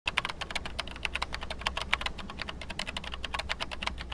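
Typing sound effect: rapid, uneven key clicks, about ten a second, over a low hum.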